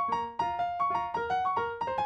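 Solo piano played by hand: a flowing melody of single notes, about four a second, each struck and left ringing over lower held notes.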